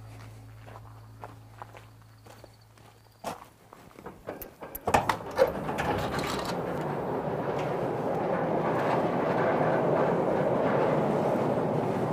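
Footsteps on gravel, then a large sliding steel barn door rolled open along its track: a few clatters about five seconds in, then a steady rumble that grows louder and holds.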